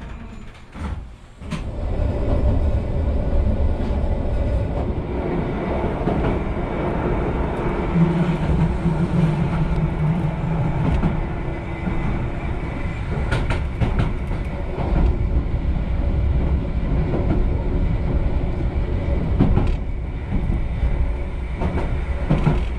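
Eizan Railway electric train running, heard from inside the carriage: a steady rumble that picks up about two seconds in, with a few sharp wheel clicks over rail joints later on.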